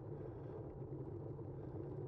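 Steady low rumble of wind on a bike-mounted camera's microphone, with the bicycle's tyres rolling on asphalt.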